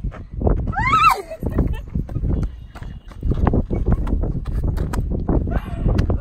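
A woman's high excited squeal about a second in, rising and then falling in pitch, followed by a quick, irregular run of knocks and scuffs.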